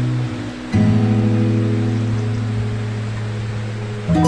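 Slow, calm acoustic guitar music. One chord dies away, and a new chord is strummed just under a second in and left to ring.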